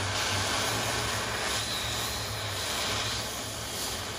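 Oxy-acetylene cutting torch burning through steel plate: a steady hissing roar from the flame and the cutting-oxygen jet.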